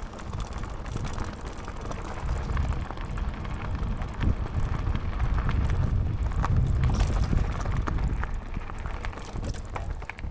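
Chromag Stylus steel hardtail mountain bike riding down a dirt forest singletrack: tyres rumbling over roots and loose soil, with sharp rattles and clicks from the bike and wind buffeting the microphone. The rumble grows louder about halfway through, then eases near the end.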